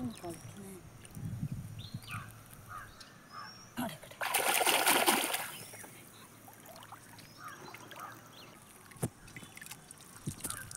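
Shallow lake water splashing and sloshing as a glass jar is dipped into it and set on the bottom, with one louder rush of splashing about four seconds in that lasts over a second.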